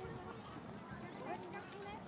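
People talking in the background, with footsteps on a walking path.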